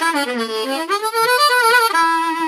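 Diatonic blues harmonica played puckered (lip-pursed single notes), a quick phrase of notes moving up and down the harp.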